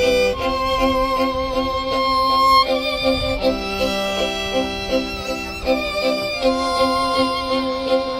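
A bowed violin playing a melody of long held notes with vibrato, over a steady pulsing accompaniment in the lower register.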